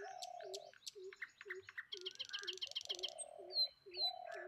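Birds chirping and calling. A low note repeats about twice a second underneath, and there is a fast trill about halfway through.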